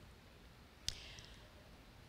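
Quiet room tone with a single short, sharp click a little under a second in.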